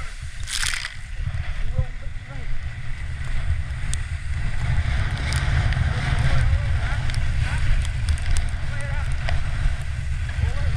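Wooden horn sledge sliding fast over packed snow, its runners hissing and scraping, under heavy wind rumble on the camera microphone. A short loud scrape of snow comes about half a second in, as a boot drags to brake and steer.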